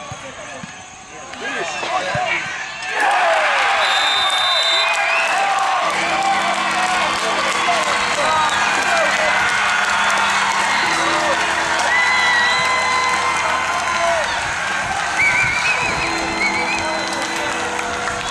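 A crowd of spectators breaks into loud cheering and shouting about three seconds in, celebrating a goal, and keeps cheering.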